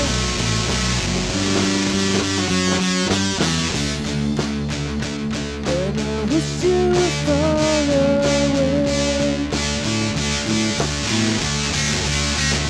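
Home-recorded three-piece rock band playing: electric guitar and bass guitar, with the drums beating strongly from about four seconds in.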